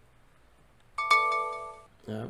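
ThinkorSwim trading-platform price-alert chime: a bright, bell-like electronic tone that strikes twice in quick succession about a second in and rings out for under a second. It signals that the price alert just set on the stock has triggered.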